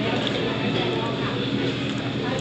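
Restaurant room noise: a steady din of distant conversation and background hum, with no single sound standing out.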